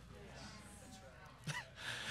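A pause in a man's speech: faint room sound, then a short, quick intake of breath about a second and a half in, with another faint breath near the end.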